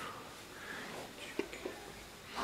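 Soft whispering voice, with two small clicks a little past the middle.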